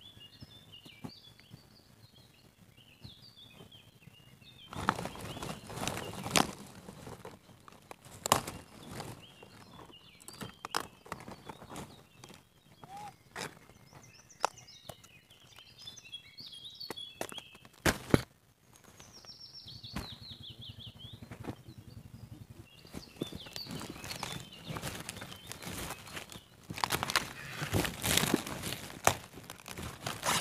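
Footsteps and rustling leaves as a person moves through vegetable-garden plants, with sharp clicks and crackles; the rustling grows louder near the end as cabbage leaves are handled. Birds chirp in the background, with one falling call about twenty seconds in.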